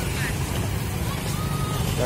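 Motor scooter engine running close by on the street, a steady low rumble, with voices scattered over it.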